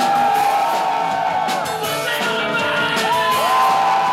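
Live rock band playing with electric guitars and drums, and a male voice singing long notes that slide up in pitch and then hold, twice.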